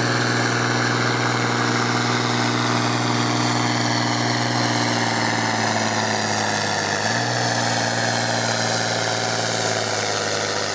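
Valtra farm tractor's diesel engine working steadily under load as it drags a weight-transfer sled. The engine note sinks slowly as the pull goes on, then steps up a little about seven seconds in.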